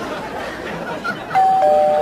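Two-tone doorbell chime: a higher "ding" sounds suddenly near the end, followed a moment later by a lower "dong", both ringing on.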